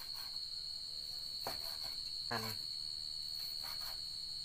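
Crickets trilling steadily in one high continuous note, with a few soft knocks of a cleaver cutting pork on a wooden chopping board.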